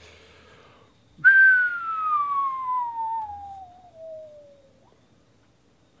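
A person whistling one long note that starts about a second in and falls steadily in pitch for about three and a half seconds before fading out.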